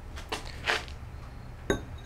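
A shop rag rubbing on a greasy steel bull gear as it is picked up and handled, a few short, soft strokes over a low steady hum.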